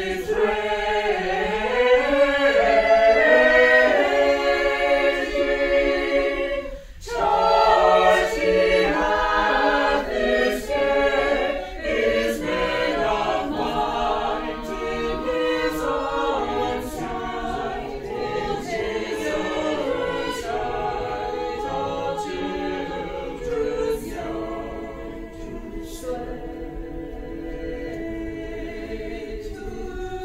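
Mixed-voice choir of men and women singing a cappella, with a brief break about seven seconds in, then growing gradually softer toward the end.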